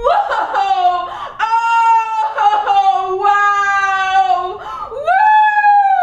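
A woman wailing in a string of long, high, quavering cries, sobbing between them, in overwrought weeping with awe.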